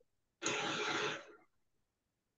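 A person clearing their throat once: a short noisy sound, with no clear pitch, lasting about a second, heard through a video-call microphone.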